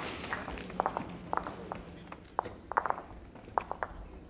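Lawn bowls clicking against each other, a string of faint, irregular knocks as the players gather them up from the rink.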